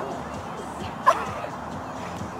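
A single short, sharp call about a second in, over faint background chatter.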